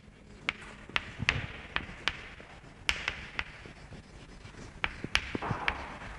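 Chalk writing on a chalkboard: a run of sharp, irregular taps as each stroke lands, with faint scratching between them.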